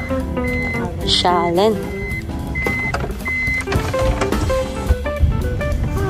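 Four high electronic beeps from a taxi's power sliding door as it closes, over background music with a voice.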